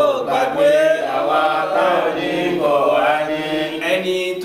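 Men's voices chanting an Islamic devotional chant (dhikr) together, a continuous wavering melodic line held and bent from syllable to syllable.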